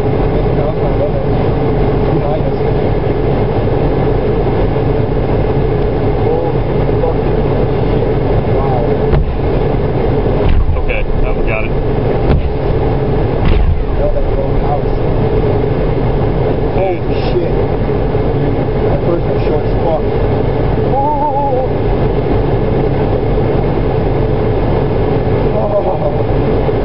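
A steady engine drone with a constant low hum, under faint distant voices and a few brief knocks.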